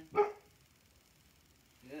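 A dog barks once, a short sharp bark just after the start.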